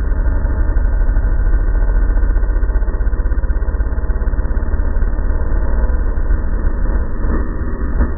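A KTM 380 MXC's two-stroke single-cylinder engine running steadily as the dirt bike is ridden along a dirt track, heard from a camera mounted on the bike.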